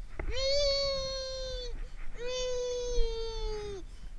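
A young child's voice close to the microphone: two long, level-pitched wails of about a second and a half each, the second starting about two seconds in.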